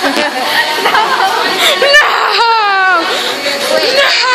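Young teenagers' voices: excited chattering and squealing, with one long high-pitched squeal a little past the middle.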